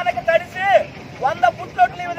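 Speech only: a high, raised voice speaking in short phrases.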